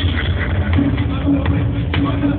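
Techno DJ set played loudly through a club sound system, dominated by a heavy, continuous bass line with a held mid-low note over it, recorded on a small camera with a muffled, dull top end. Voices in the crowd are mixed in.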